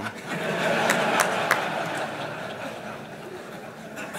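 Audience laughing at a joke in a large hall, swelling in the first second and dying away, with a few sharp clicks near the start.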